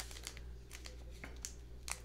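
Faint scattered clicks and light rustles of tea packets and their packaging being handled, over a steady low hum.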